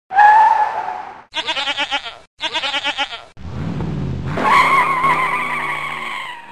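Intro sound effects: a goat bleat, then two quick, fast-pulsing bleats, then a car engine revving up into a long tire squeal that fades out near the end.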